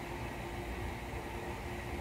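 Steady low background noise with a faint constant hum and low rumble; no distinct sound events.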